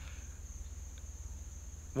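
Steady, high-pitched insect chorus droning without a break, over a constant low rumble.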